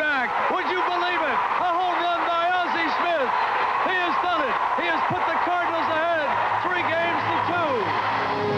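Packed ballpark crowd cheering without a break, with excited shouting voices over the roar, celebrating a walk-off home run.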